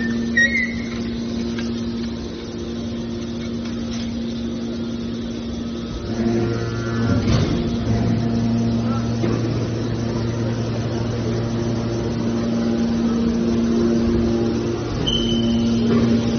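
Hydraulic power unit of a scrap metal baler, electric motor and pump running with a steady hum; about six seconds in a deeper drone joins as the load on the pump rises.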